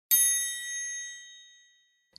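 A single high bell-like chime, struck once and ringing away to nothing over about a second and a half.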